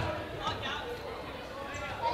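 Indistinct voices of players and spectators in a gymnasium, with a faint knock about half a second in.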